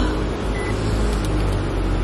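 A car running, heard from inside its cabin as a steady low rumble.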